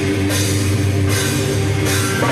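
Live heavy metal band playing an instrumental passage: distorted electric guitars and bass hold a low riff while the drummer crashes cymbals about every three-quarters of a second.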